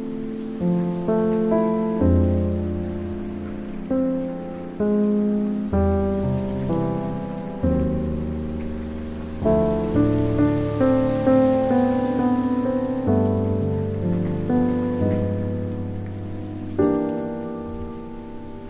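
Slow, soft background piano music: chords and single notes struck every second or so and left to ring away, over a faint steady hiss like rain.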